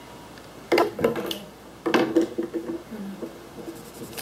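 A girl laughing in two short bursts about a second apart.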